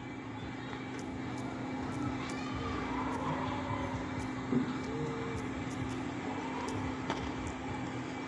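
Steady low background noise with a constant low hum and faint, indistinct distant sounds, with no distinct event standing out.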